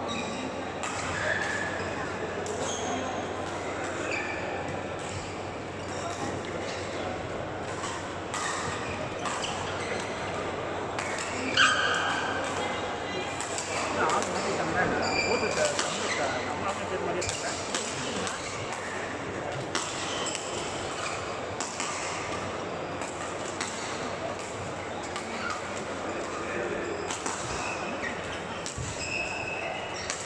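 Busy badminton hall ambience: many players' voices blending into a steady echoing chatter, with frequent sharp racket hits on shuttlecocks and short high squeaks from several courts at once. One louder sharp hit stands out about twelve seconds in.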